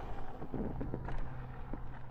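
Rawrr Mantis X electric dirt bike riding along: a low rumble of wind on the microphone and tyre noise, with a low steady hum from the bike coming in under a second in and a few faint clicks.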